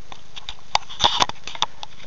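Handling noise from a handheld camera being turned around: a few short clicks and knocks close to the microphone, the loudest cluster a little after a second in.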